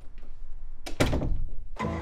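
A single heavy thunk about halfway in, its low end ringing on for most of a second. Music begins just before the end.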